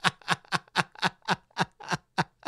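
Someone laughing in a quick, even run of short breathy bursts, about four a second.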